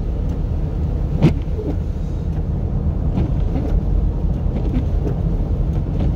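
Inside a moving car: steady low rumble of tyres and engine on the road. There is one sharp knock about a second in.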